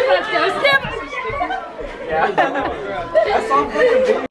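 A group of people chattering and calling out over one another, their voices overlapping so that no single speaker stands out.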